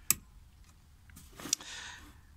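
Two sharp plastic clicks about a second and a half apart, the second within a brief rustle, as the home-made LED work light on its DeWalt battery adapter is handled and turned.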